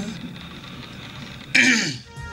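A man's sung line fades out at the start. After a short quiet moment, about one and a half seconds in, comes a brief, breathy vocal sound that slides down in pitch.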